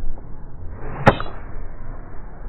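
A middle iron swishing down and striking a golf ball: one sharp, crisp click about a second in, with a brief high ring after. A steady low outdoor rumble runs underneath.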